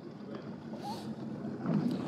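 Faint wind on the microphone and water around a kayak on open sea, growing a little louder near the end, with a short hiss about a second in.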